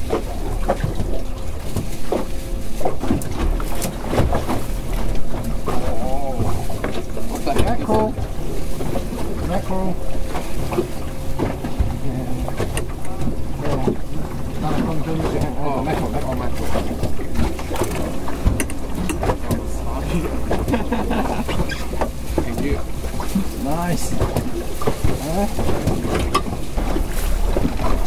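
Wind buffeting the microphone and choppy water slapping against a small aluminium boat's hull, a steady low rumble throughout, with bits of indistinct talk at times.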